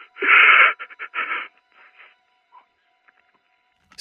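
A person sobbing with breathy gasps, heard thin and narrow as through a telephone line: two strong sobs in the first second and a half, then a few fainter ones.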